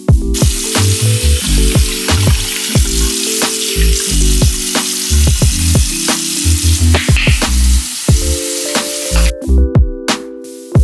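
Tap water running into a bathroom sink, a steady hiss that stops shortly before the end, over background music with a beat and bass notes.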